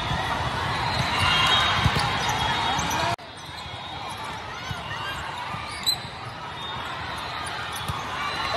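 Indoor volleyball play in a large, echoing hall: sharp ball hits over a steady bed of crowd chatter and noise from neighbouring courts. About three seconds in the sound drops abruptly to a quieter, thinner hall ambience with a few more knocks and a brief high chirp near six seconds.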